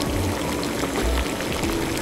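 Steady watery hiss of a pot of water heating on the stove for boiling a lobster, with soft background music underneath.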